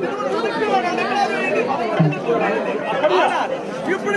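Several voices talking over one another at once.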